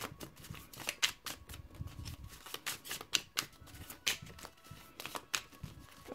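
A deck of oracle message cards being shuffled by hand: a quick, irregular run of soft card clicks and flicks.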